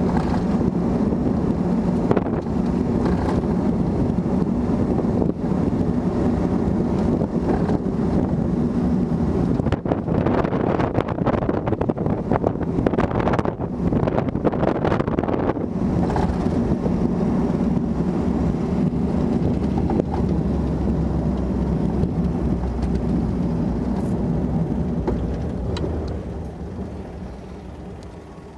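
1955 Nash Metropolitan convertible driving at speed with the top down: its small Austin four-cylinder engine runs steadily under wind and road noise. Near the end the sound fades down as the car slows.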